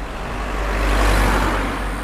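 Outdoor road traffic noise with a low rumble, as of a vehicle passing: it swells to a peak about a second in and then fades.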